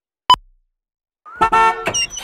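A single short, sharp click near the start, then one car horn blast of about half a second, a steady multi-tone honk.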